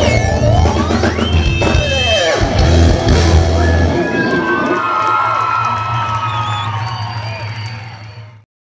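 Rock music with drums and guitar, full of sliding notes; about halfway the heavy bass drops away and held notes carry on, starting to fade near the end.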